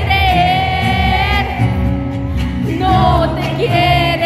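Live pop band concert heard from within a stadium audience: a woman's lead vocal sings long held notes with vibrato over the band.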